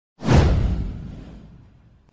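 Intro whoosh sound effect with a deep rumble under it, swelling suddenly and fading away over about a second and a half.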